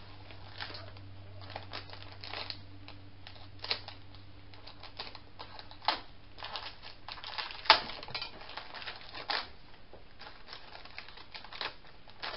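Clear plastic packet crinkling and rustling, with scattered small clicks and taps as a thin metal cutting die is handled and laid on card. The sharpest click comes a little past halfway.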